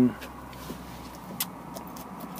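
A few faint, sharp clicks and light rustling of thin wires being handled, over a low steady background hum.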